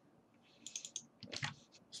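Computer keyboard keys tapped quickly, in two light clusters of clicks: about half a second in and again around a second and a half in.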